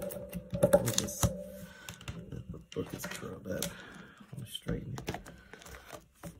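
Irregular light clicks and taps as a hand with long acrylic fingernails moves over the thin pages of an open Bible.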